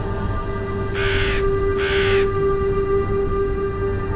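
Dark electronic music with a steady low drone, over which a crow caws twice, about a second in and again just under a second later.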